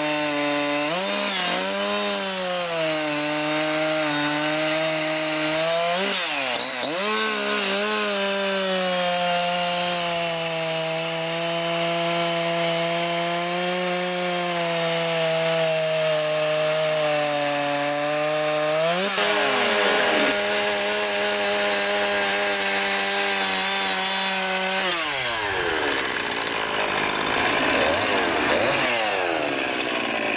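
Two-stroke chainsaw with a long bar running at high revs while it cuts down into a wooden log. Its pitch dips and recovers several times in the first few seconds as the chain bites and takes load, then holds steady. The pitch shifts about two-thirds of the way through, and near the end the sound turns rougher and more varied as the saw carves another piece.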